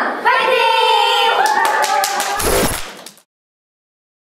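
A group of girls shouting a long, drawn-out cheer together, with a sharp loud hit near its end, then the sound fades out at about three seconds.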